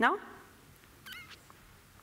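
A woman's voice with a short rising "no?" at the start, then a quiet hall with a brief, faint, high-pitched voice-like sound about a second in.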